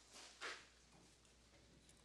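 Near silence: faint room tone, with one brief, soft, breath-like puff about half a second in.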